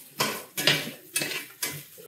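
Metal spatula scraping across a cast-iron skillet while stirring diced carrots, four strokes about half a second apart.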